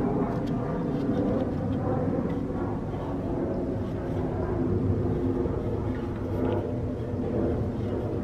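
Steady low rumble of outdoor background noise from road traffic.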